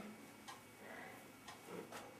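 Near silence with faint, regular ticks about once a second, like a clock.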